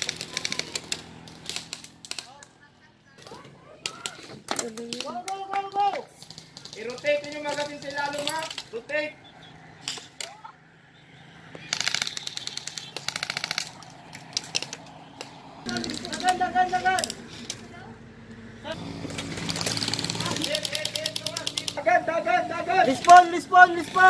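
Airsoft guns firing rapid automatic bursts, a fast rattle of shots heard three times: at the start, about halfway through and near the end.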